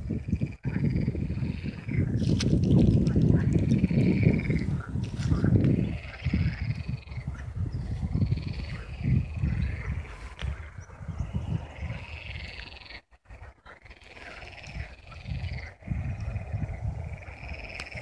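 A chorus of frogs calling from the pond, short croaking calls repeating about once a second. Underneath runs a low rumble, heaviest in the first six seconds and patchy after.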